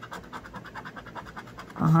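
A scratcher coin rubbed quickly back and forth over a lottery ticket's scratch-off coating, in a rapid, even run of short scraping strokes. A woman's voice starts just at the end.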